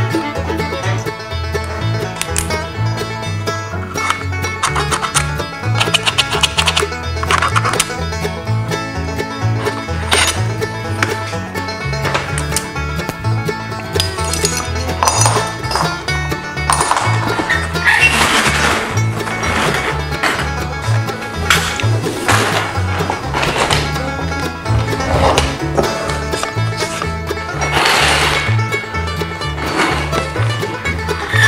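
Background music with a steady, rhythmic bass line, with a few short noises over it in the second half.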